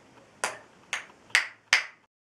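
A small child clapping his hands four times, about half a second apart, each clap sharp and a little louder than the last.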